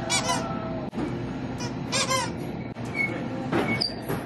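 Squeaker in a plush candy cane dog toy being squeezed, giving three short bouts of squeaks with a wobbling pitch: one at the start, one about halfway, and one near the end.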